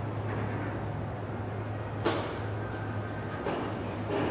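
Room tone with a steady low hum, broken by one sharp knock about two seconds in.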